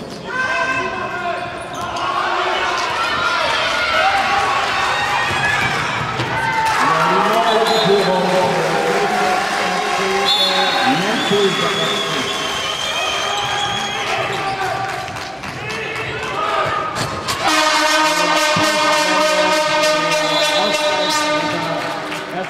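A handball bouncing on a sports hall floor amid shouting voices that echo in the hall. Near the end a loud, steady pitched tone holds for about four seconds.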